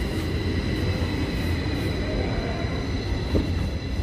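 Passenger train running, heard from inside the carriage: a steady low rumble with a thin steady high whine above it.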